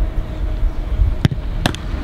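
A football thudding twice, less than half a second apart, as it is struck and caught in a goalkeeper's gloves, over a steady low rumble.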